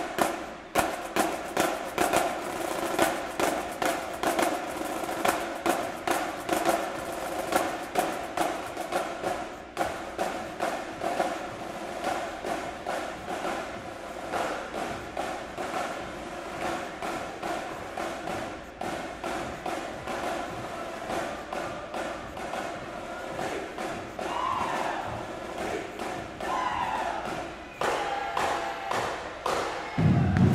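High school marching band drumline playing a marching cadence: snare drums, tenor drums, crash cymbals and bass drums in a fast, steady beat of dense strokes.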